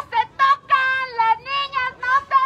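A single high-pitched female voice chanting a protest slogan in drawn-out, sung syllables.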